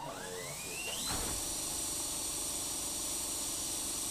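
Cordless drill motor spinning up, its whine rising in pitch over about a second, then running steadily at full speed with a high whine.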